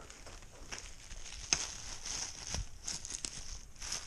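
Plastic bubble wrap crinkling and crackling as it is handled and unwrapped from around a dagger, an irregular run of rustles and sharp little crackles, the sharpest about a second and a half in.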